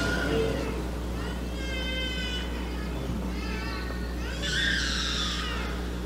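Two short, faint, high-pitched wavering cries, about two seconds and about five seconds in, over a steady low hum in an otherwise hushed room.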